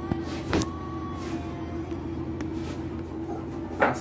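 A steady low hum, like a running motor, with a few light clicks and taps over it.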